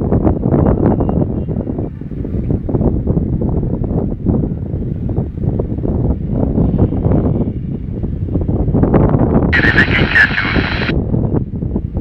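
Uniden handheld scanner's speaker playing a rough, noisy transmission received on a US military satellite channel used by radio pirates. There is a short, higher-pitched burst of sound near the end.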